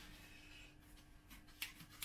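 Near silence: room tone with a low steady hum and a few faint clicks of handling in the second half, the sharpest about one and a half seconds in.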